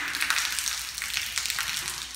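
A thin stream of water pouring from the open end of an overhead cast iron drain pipe and splattering onto the concrete floor below, a steady splashing that slowly fades.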